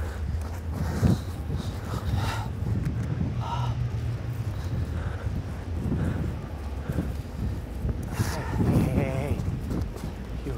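Steady low wind rumble on the microphone, with faint, indistinct voices now and then, strongest near the end.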